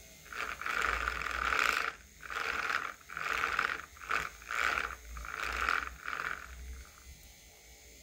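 Small battery-powered toy DC motor with a neodymium magnet on its shaft, buzzing and rattling in about six bursts of under a second each as a second magnet on the flapper arm is held near it. The magnets' pull is strong enough to check the motor.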